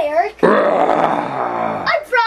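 A loud growl lasting about a second and a half. It starts abruptly half a second in and sinks slightly in pitch before cutting off.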